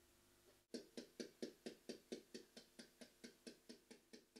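Faint, fast, even ticking, about four to five ticks a second, starting under a second in.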